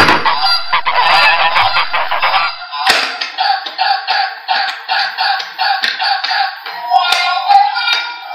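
Toy swan's electronic honking sound effect from its small speaker. A dense stretch of honks comes first; after a short break near three seconds it goes on as a steady run of short honks, about three a second.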